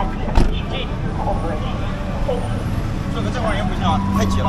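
A taxi door shut once about half a second in, followed by steady street traffic rumble and scattered passing voices.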